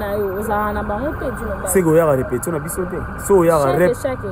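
A man talking continuously over a steady low background rumble.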